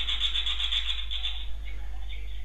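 A fast, even rattle of mechanical clicks that stops about one and a half seconds in, over a steady low hum.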